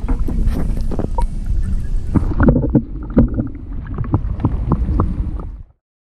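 Wind rumbling on the microphone aboard a fishing kayak, with a run of irregular knocks and thumps from handling on board. The sound cuts off abruptly near the end.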